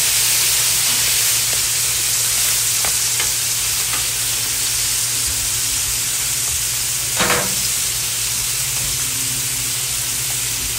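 Pork chops sizzling on a hot Blackstone flat-top griddle, a steady frying hiss, with a few light clicks from tongs. A brief louder knock comes about seven seconds in.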